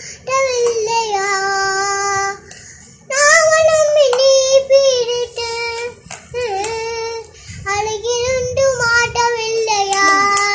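A young girl singing a song in Tamil without accompaniment, in held phrases with a short pause about three seconds in.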